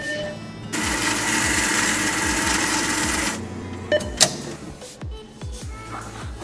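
An ATM's cash dispenser whirring for about two and a half seconds as it counts out banknotes, followed by two sharp clicks about a second later. Background music with a repeating bass beat plays throughout.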